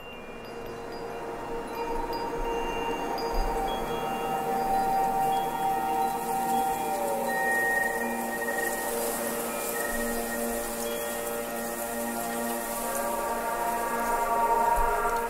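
A sampled pad from a Balkan Ensemble library holding one sustained A#4 note. It swells in gradually over the first couple of seconds, then holds steady with a bright upper shimmer and reverb.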